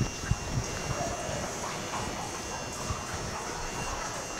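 Steady electric hum of a stall fan, with faint rubbing of a hand over a horse's coat and a few soft low thumps near the start.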